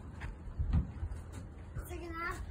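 Low background rumble with a soft thump about three-quarters of a second in, and a short, faint voice near the end.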